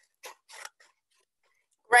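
Scissors cutting card: two quick snips, then quiet.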